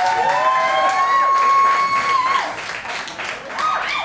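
Audience applauding and cheering as a live rock song ends, with one long held whoop over the clapping and another short cry near the end.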